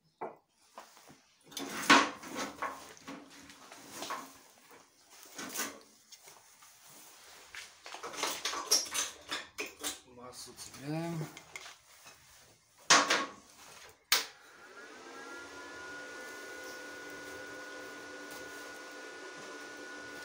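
Cable plugs and leads clattering and knocking as welding cables are handled at a DEKO 200 inverter welding machine. About 14 seconds in there is a sharp click, and the welder then runs with a steady hum and a thin, high whine.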